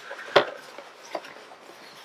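Cardboard Funko Pop box being handled and turned over in the hands: a few light taps and knocks, the clearest just under half a second in and a fainter one a little past the middle.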